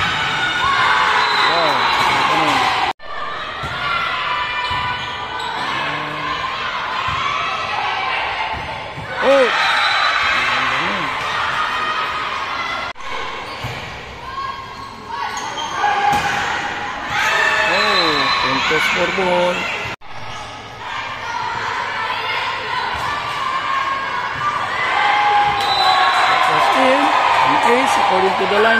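Volleyball being hit back and forth in indoor rallies, with players and spectators shouting and cheering throughout. The sound breaks off abruptly three times.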